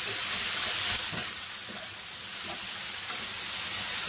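Thinly sliced wild boar stir-frying with a steady sizzle in a sauté pan as it is turned with a spatula and chopsticks, with a few light utensil knocks about a second in.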